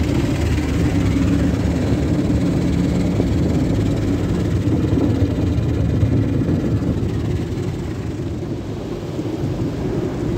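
AVW tunnel car wash equipment heard from inside the car: a steady rumble of machinery with water spraying and sheeting over the car's glass and body.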